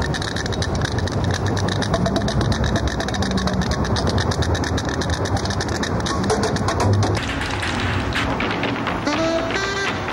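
Drumsticks beating a fast, even rhythm on a concrete sidewalk as a piece of street percussion. The pattern changes about seven seconds in, and pitched notes join near the end.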